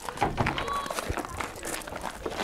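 Footsteps of several people walking on gravel, a string of short irregular steps.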